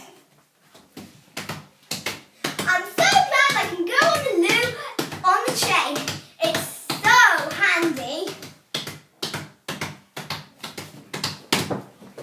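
A young girl's high voice talking, with no words the recogniser could catch, broken by a string of short sharp smacks; the smacks come two or three a second in the last few seconds.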